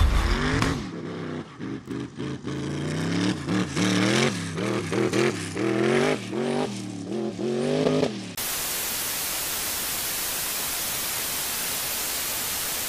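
Dune buggy engine revving up and down again and again, its pitch rising and falling in quick surges. About eight seconds in it cuts off suddenly to a steady static hiss.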